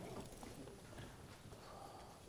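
Near silence: room tone in a lecture hall, with a few faint scattered knocks.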